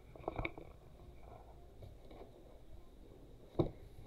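Hardcover colouring book being handled and shut. There are a few soft taps and paper rustles about half a second in, then a single sharp knock near the end as the cover closes.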